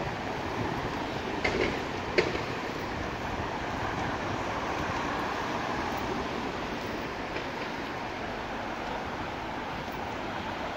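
Steady road traffic noise from cars, cabs and buses passing on a city street, with two short sharp clicks about one and a half and two seconds in.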